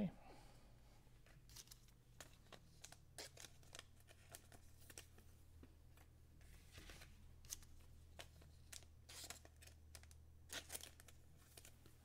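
Faint handling of baseball trading cards: light clicks and short rustles as cards are shuffled through and set down, over a low steady hum.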